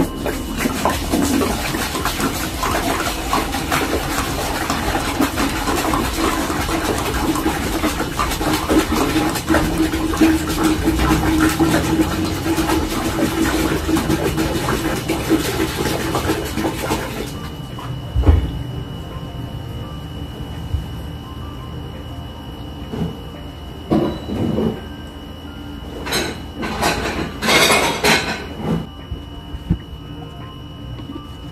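Water poured from a large plastic water-cooler jug into a partly filled aquarium, a steady splashing that stops about 17 seconds in. Then a single thump, and several short handling noises near the end.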